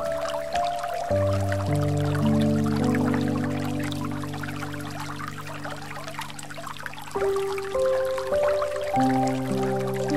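Slow, calm relaxation music of long-held notes and chords, changing chord about a second in, again around seven seconds and near the end, over a steady sound of flowing water.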